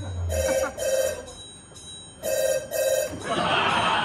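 Telephone ringing in a double-ring cadence, played as a sound effect over the bar's speakers: one ring-ring pair near the start and a second about two seconds in.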